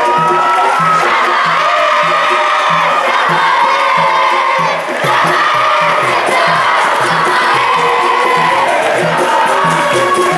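Capoeira song: a crowd of children singing together loudly and clapping along to a steady low beat, with a berimbau being played.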